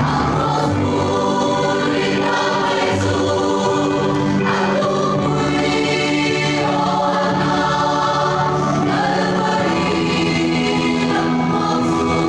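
Mixed church choir singing a hymn in parts, holding long sustained chords that shift every second or two.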